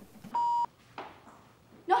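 A short edited-in censor bleep: one steady beep at a single pitch, about a third of a second long, that starts and stops abruptly. Speech starts right at the end.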